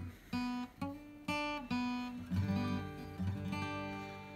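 Steel-string acoustic guitar played unaccompanied: a few single notes plucked one after another, about half a second apart, then fuller chords left ringing from about halfway through.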